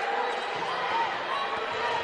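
A basketball dribbling on a hardwood court amid steady arena crowd noise.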